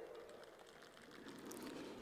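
Near silence: faint background noise in a pause between spoken sentences.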